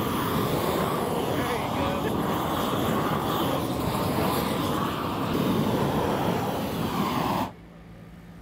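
Propane heat torch burning with a steady rush as it heats a thermoplastic pavement marking, stopping abruptly about seven and a half seconds in.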